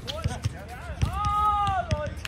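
A basketball bouncing on an outdoor hard court with sneaker footsteps, as a player gives a drawn-out shout lasting about a second, from about halfway through to near the end.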